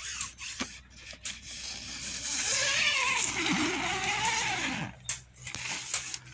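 Tent door zipper being drawn open, with the nylon tent fabric rustling. The scratchy zipping sound is loudest from about two to five seconds in, with light handling knocks around it.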